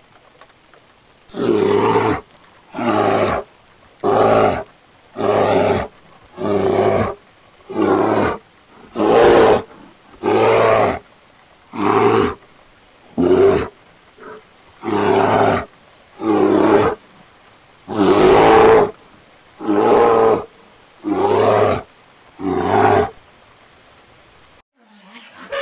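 Bear roaring in a long series of short, loud roars, about sixteen of them a little over a second apart, with the longest about three quarters of the way through.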